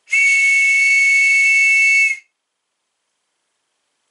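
A whistle blown in one loud, steady blast of about two seconds: two high tones sound together and then cut off sharply.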